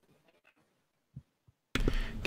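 Near silence from a dropped video-call audio feed, with two faint ticks. Near the end the feed cuts back in with a sudden burst of noise.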